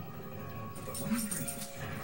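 Two pit bull-type dogs play-fighting, with low dog vocal sounds, the clearest about a second in. Television advertisement music plays underneath.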